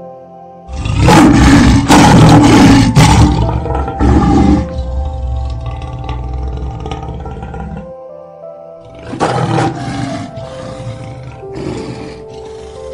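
Male lion roaring: a long, loud roar starting about a second in that fades away over the next few seconds, then two shorter calls later on, over soft background piano music.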